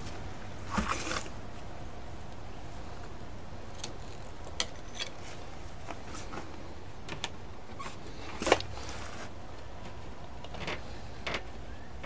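Small scattered clicks, taps and rubs of hands pressing short pieces of rubber garden hose into the gap under a window's glass along a wooden sill, with one louder bump about eight and a half seconds in.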